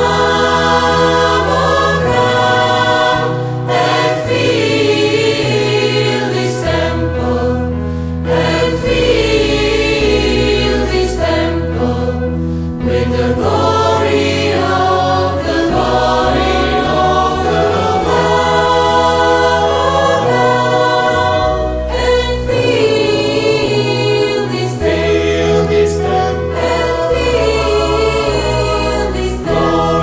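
A church choir singing a sacred song in several parts, with held low notes beneath the voices.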